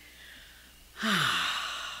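A woman's long sigh into a close microphone: a faint breath in, then about a second in a loud breathy exhale whose voiced tone falls in pitch and fades away.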